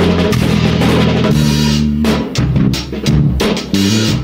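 Electric bass guitar and acoustic drum kit playing a fast drum and bass groove together. Held bass notes run under the drums; from about halfway the kit breaks into sharp separate kick and snare hits between the bass notes.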